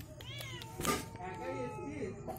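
A cat mewing quietly: a short, high, falling mew just after the start and a softer one past the middle.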